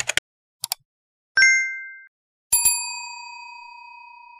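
Animated end-card sound effects: a few short clicks, then a bright two-tone ding about one and a half seconds in. About two and a half seconds in, a bell-like notification chime strikes and rings on, fading slowly.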